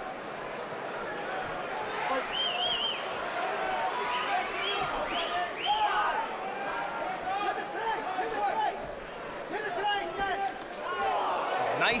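Arena crowd noise at a mixed martial arts fight: many voices shouting and cheering over one another, with single shouts rising above the din.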